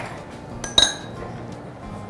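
Metal spoon clinking as it is picked up off the tabletop: two quick clinks close together, the second ringing briefly, over faint background music.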